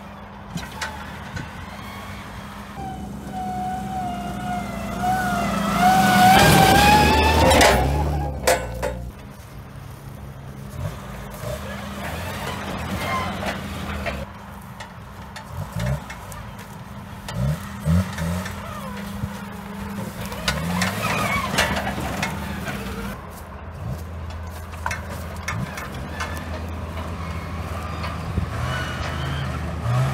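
Lifted Geo Tracker's engine running and revving as it crawls over dirt mounds, with scattered knocks and clunks from the truck. A long, wavering high tone rises over the engine in the first third and is the loudest part, followed by a quick run of sharp knocks.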